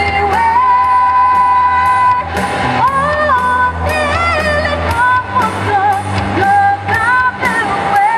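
A woman singing a rock song into a microphone, holding long notes that slide between pitches, over loud backing music with a steady drum beat.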